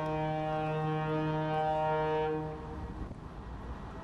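A ship's horn sounding one long, steady blast that stops about two and a half seconds in.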